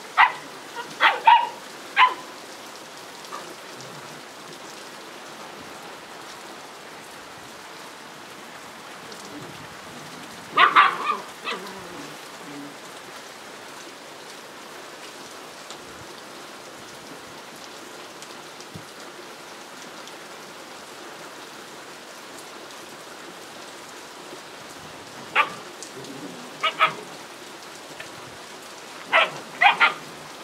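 Puppies barking in short bursts while playing tug of war over a cloth: a few barks just after the start, a cluster about ten seconds in and several more near the end, over a steady background hiss.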